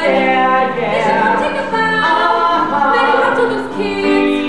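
A young man and a young woman singing together in harmony, holding long notes that change about once a second, with little or no accompaniment.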